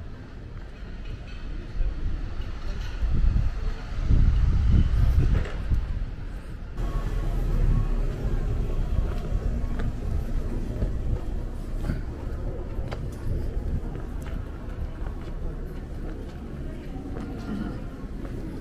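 Outdoor street ambience heard while walking: a loud, uneven low rumble, strongest about four to six seconds in, with voices of passers-by in the background.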